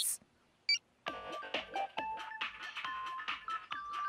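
A short electronic blip as a phone's music app icon is tapped, then a melody with a regular beat starts playing from the phone about a second in.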